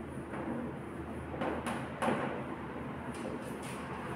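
Chalk writing on a chalkboard: a series of short scrapes and taps over a steady low room hum.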